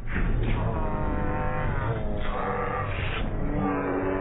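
A cartoon girl's shouted line "Today is my birthday!" played heavily slowed down, so the voice is deep and drawn out into long, slowly wavering tones.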